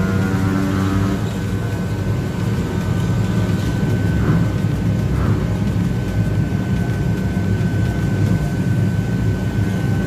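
Motorcycle engine running hard on a chassis dynamometer during a power run, a loud, steady sound with a thin high whine running through it. Background music fades out in the first second.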